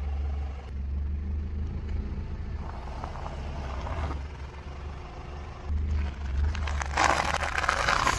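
A car's engine hums low and steady while its tyre rolls slowly over snacks laid on asphalt and crushes them. There are faint crackles near the middle and a loud crunch starting about seven seconds in that lasts over a second.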